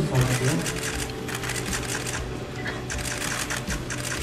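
Several press cameras' shutters clicking in rapid, overlapping bursts during a photo call, with short lulls between the bursts.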